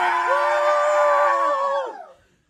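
A group of people singing together, holding one long drawn-out note in several voices that slides down and breaks off near the end.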